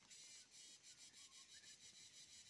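Faint scratching of a pen writing on paper, a quick run of short strokes, several a second.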